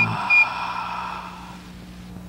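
Short electronic sound effect marking a change of scene: a hissy, ringing chord with a brief bright tone about half a second in, fading away over about a second and a half, over a low steady hum.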